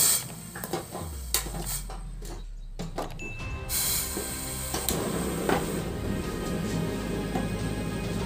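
Sharp clicks and metal knocks as a gas stove burner is worked with a lighter, then a steady hiss of the burner coming on about four seconds in, with background music underneath.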